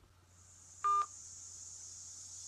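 A single short electronic phone beep, the tone of a call being ended, about a second in. A faint high hiss swells behind it.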